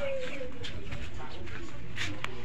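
A low cooing bird call that falls in pitch near the start, with indistinct voices in the background.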